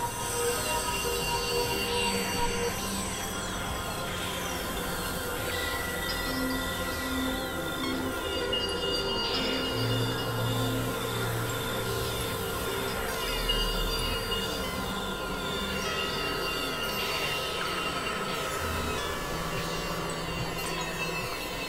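Experimental electronic synthesizer drone music: many layered sustained tones that shift pitch every second or two over a noisy, screechy wash, crossed by streams of quick falling glides.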